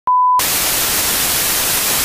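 A brief steady 1 kHz test-signal beep, as played over television colour bars, cuts abruptly to loud hissing white-noise static like a television with no signal.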